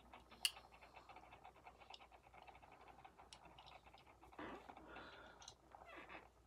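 Near silence: faint room tone with a light click about half a second in and soft breathy noise in the second half.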